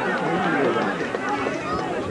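Indistinct chatter of several spectators talking over one another, with no words clearly made out.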